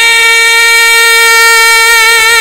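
A male naat reciter holding one long, high sung note, steady in pitch.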